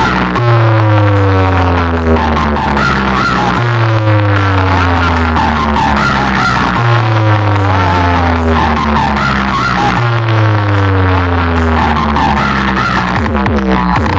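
Loud DJ competition music played through a large stacked speaker-box sound system under test. A heavy bass note with a set of falling-pitch tones starts about every three seconds, five times over.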